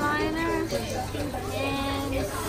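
A high voice making long, wavering vocal sounds with no clear words, over a steady low hum.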